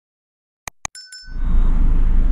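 Subscribe-button animation sound effect: two quick mouse clicks followed by a short bell ding. About a second and a half in, a loud, steady low rumble of outdoor background noise takes over.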